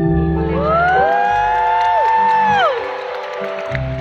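Live band music with sustained keyboard chords. About half a second in, audience members let out long whoops over it, rising, holding and falling away after about two seconds.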